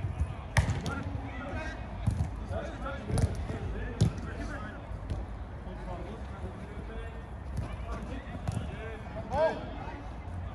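A football being kicked on an artificial-turf pitch: a few sharp thuds of boot on ball, mostly in the first half, with players calling out and one louder shout near the end.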